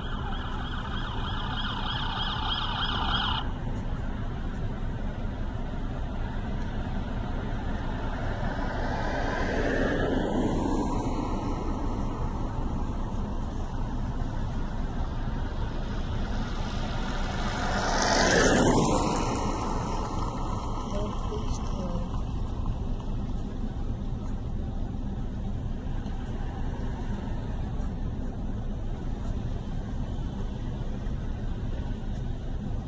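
Steady low rumble of highway traffic at a crash scene. A siren-like tone cuts off about three seconds in. Two vehicles pass, the second and louder one about two-thirds of the way through.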